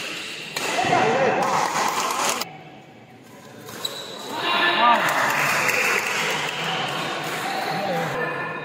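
Spectators shouting and cheering in an indoor hall, in two outbursts: one from about half a second in lasting two seconds, and a longer one from about four seconds on.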